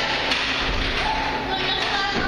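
Echoing background voices in a large indoor hall, with a dull thump about two-thirds of a second in.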